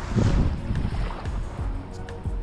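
Wind buffeting the microphone over the wash of small waves on a sand beach, with music playing faintly underneath.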